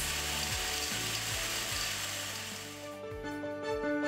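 Nickel pellets pouring from a steel chute into a steel drum: a steady hissing rattle that fades out about three seconds in, over background music.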